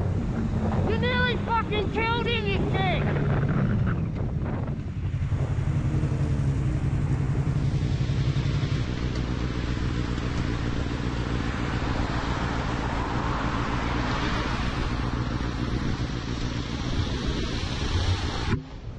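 Yamaha sport bike engine running, with wind rushing over the helmet-camera microphone. About a second in, a voice gives several short shouts.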